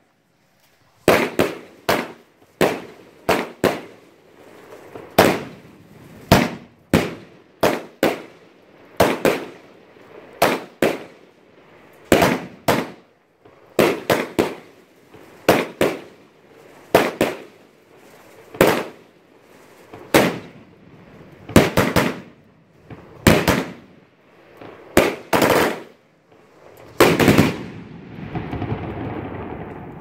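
A 25-shot consumer fireworks cake firing its shells: a string of sharp, loud reports, about one or two a second and often in close pairs. The last big report near the end is followed by a fading rumble.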